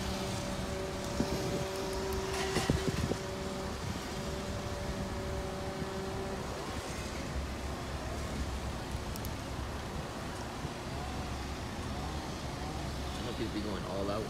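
Steady low rumble of a car driving, with faint voices underneath.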